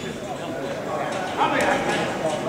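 Amateur boxing bout in a hall: light knocks of footwork and gloves in the ring over a murmur of voices from the crowd and corners, with a louder shout about one and a half seconds in.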